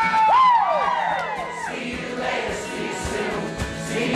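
Live acoustic band music with accordion and acoustic guitars, and a crowd singing along in chorus. The singing is loudest in the first second or so, then eases.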